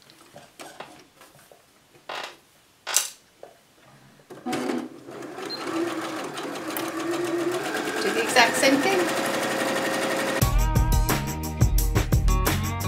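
Electric sewing machine (HZL-LB5020) stitching a seam. After a few sharp clicks, it starts about four seconds in and runs steadily, growing louder over the next few seconds. Music comes in near the end.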